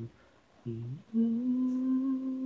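A solo voice humming a cappella: after a brief pause, a short note, then a long steady held note from just past a second in.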